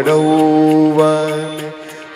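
A man's voice holding one long, steady sung note over harmonium in a Bhojpuri devotional song, the note dying away near the end.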